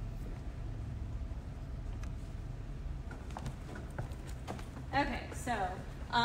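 Boot heels tapping on a hardwood dance floor in scattered footsteps over a steady low hum. A voice speaks briefly near the end.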